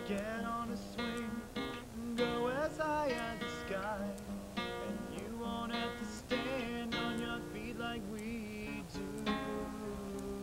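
Acoustic guitar strummed and picked in a steady rhythm, accompanying a man singing.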